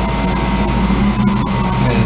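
Steady machinery hum of a building mechanical room, where circulating pumps are running: an even low drone with thin steady high tones above it and a couple of faint clicks partway through.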